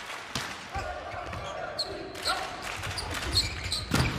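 Indoor volleyball rally: the sharp slap of a jump serve about a third of a second in, then short squeaks of sneakers on the court and ball contacts, with a hard hit just before the end.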